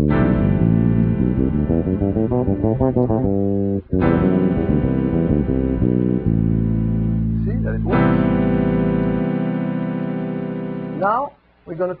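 Solo electric bass guitar improvising in the Lydian mode: a quick run of notes, then a struck note left ringing about four seconds in, a few descending notes, and another long note struck about eight seconds in that rings and fades.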